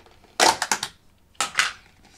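Snap-on lid of a thin plastic takeaway food tub being prised off: a quick cluster of crackling plastic clicks about half a second in, then a shorter pair of cracks about a second later.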